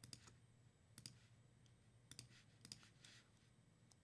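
Near silence broken by a few faint computer mouse clicks, spaced out at irregular intervals.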